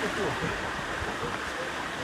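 Running water flowing steadily.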